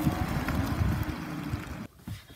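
Chrysler Pacifica minivan driving past: a steady low rumble of engine and tyres mixed with wind on the microphone, cutting off abruptly near the end.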